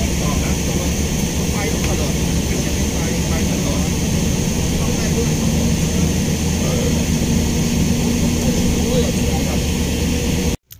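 Shuttle bus engine running with road noise inside the moving bus cabin: a steady, loud low drone.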